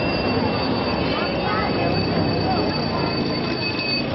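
Street hubbub with people's voices, under a steady high-pitched whine of two tones that cuts off near the end.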